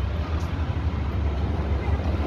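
A steady low outdoor rumble with a fluctuating hiss over it.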